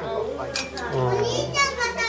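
High-pitched children's voices chattering and calling out in a room, with a steady low hum beneath.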